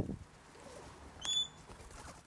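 A low thump right at the start, then a bird's single short, high whistled note about a second and a quarter in.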